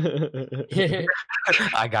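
A man's voice making speech-like sounds with no clear words, broken by a short pause about a second in, then the start of a spoken word near the end.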